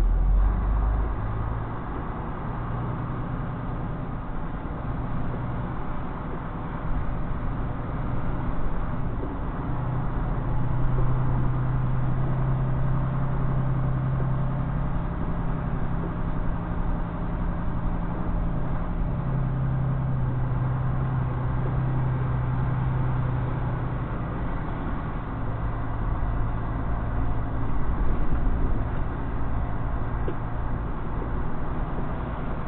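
A semi truck's diesel engine drones at low speed as the truck crawls along, heard from inside the cab. The drone grows louder and a little higher about ten seconds in, then eases back a little after twenty-odd seconds.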